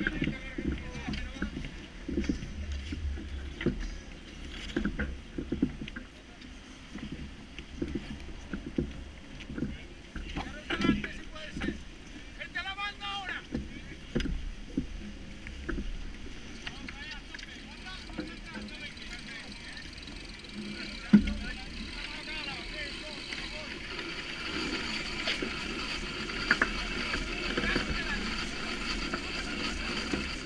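Ambience of a sailing yacht under way: a steady rush of wind and water with scattered knocks and clicks from rigging and deck gear, and voices. A single heavier thump comes about 21 seconds in, and the rush of wind and water grows louder over the last few seconds.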